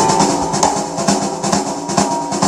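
Live band music with the drum kit to the fore: quick, evenly spaced snare and bass drum hits, about five a second, over bass and guitar.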